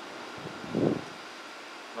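Steady hum of an air conditioner in a small room, with one brief muffled sound a little before the one-second mark.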